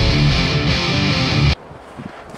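Background rock music with electric guitar, cutting off suddenly about three-quarters of the way through and leaving a quiet pause.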